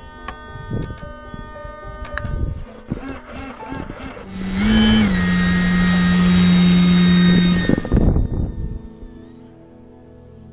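Electric motor and propeller of an RC glider running at full power, a steady humming tone over a loud rush of air, starting about four seconds in and cutting off abruptly after about three and a half seconds. Background music plays throughout.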